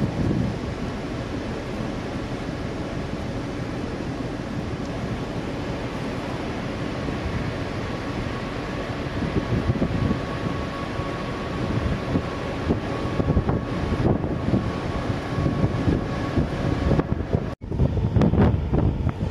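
Wind buffeting the microphone on the open deck of a moving cruise ferry, over a steady low rumble of the ship and water; the gusts grow stronger about halfway through, and the sound drops out briefly near the end.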